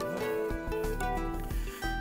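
Instrumental backing music of a song between sung lines, with held notes that change pitch in steps and no voice.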